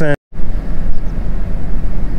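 A word of speech cut off by an edit, then a steady low rumble and hiss of a vehicle's engine, heard from inside the cab through an open window.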